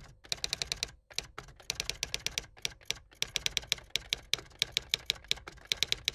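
Typing sound effect: quick runs of sharp keystroke clicks broken by short pauses, matched to on-screen text appearing one letter at a time.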